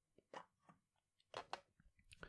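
A handful of faint, short clicks, spread unevenly over two seconds.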